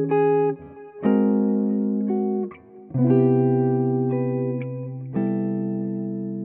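Electric archtop jazz guitar playing the final chords of a progression that resolves to C major 7: three chords struck about two seconds apart, each left to ring, the last one fading.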